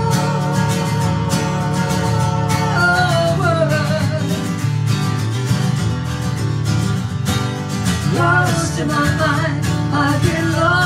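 Two acoustic guitars strummed together under a woman singing. She holds one long note at the start and slides down from it, and a new rising phrase comes in near the end.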